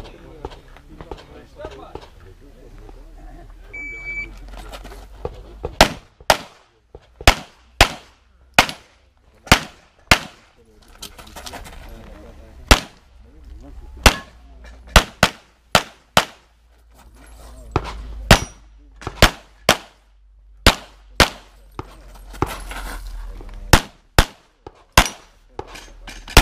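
A shot timer beeps once, and about two seconds later a competition pistol starts firing: some two dozen sharp shots, mostly in quick pairs, in strings broken by short pauses as the shooter moves between positions on an IPSC stage.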